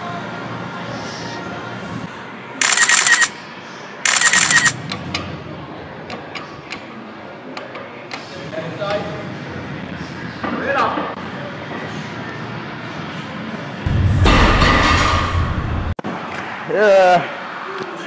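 A heavy barbell deadlift single (180 kg) picked up on a mic clipped to the lifter's chest. Two short, loud bursts come a few seconds in as he braces, and strained breath comes during the pull. Near the end, a loud two-second rush of noise stops abruptly as the lift is finished and the bar is set down. Faint gym music plays underneath.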